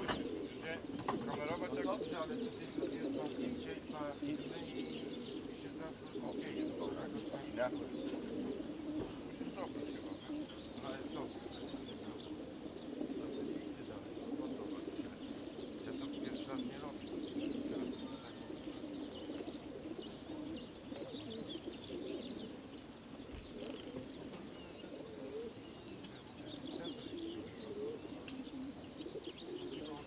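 Many racing pigeons cooing together in the crates of a pigeon transport truck, a steady dense murmur of coos, with small birds chirping over it.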